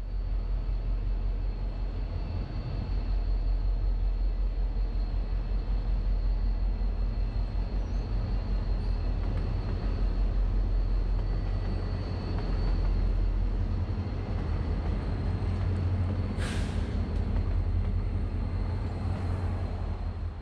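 Diesel locomotives hauling a passenger train past, with a steady low engine rumble throughout. A brief hiss comes about sixteen seconds in.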